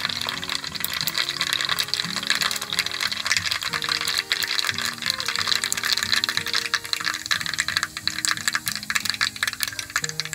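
Hot cooking oil sizzling and crackling in a pot on a gas stove, with many fine pops, under a background music track with a steady melody.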